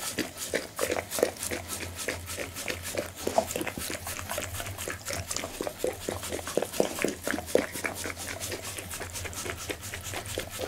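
Pit bull licking and smacking at the table surface close to the microphone for leftover scraps of its raw meal, a fast run of wet tongue clicks and mouth smacks.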